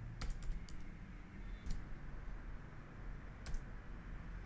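Computer keyboard being typed on: a handful of separate keystrokes, spread unevenly over a few seconds, with the sharpest one about three and a half seconds in.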